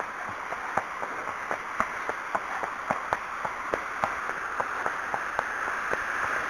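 A horse's hooves clopping at a walk on a wet paved road, about two to three footfalls a second, over the steady rush of a ford's running water that grows louder near the end.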